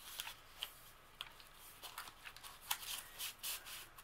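Faint rustling and light taps of paper and manila-card tags being handled and pressed flat by hand, as scattered short strokes.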